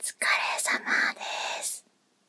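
A woman whispering a short greeting, 'otsukaresama desu', close to the microphone, in a few breathy syllables lasting under two seconds.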